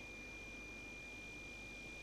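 Faint steady hiss with a thin, steady high-pitched tone and a low hum: the background noise of the recording, with no other event.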